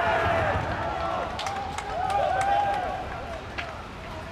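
Footballers shouting in celebration just after a goal: loud, high, drawn-out yells from several voices overlapping, fading after about three seconds, with a few sharp clicks in between.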